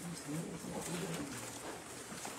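A person's low, indistinct murmuring: several short, soft, low-pitched voice sounds with no clear words.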